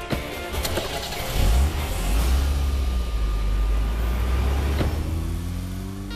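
Car engine running with a heavy low rumble as the car moves off, under dramatic background music. A sharp thud comes just after the start and a rising whine near the end.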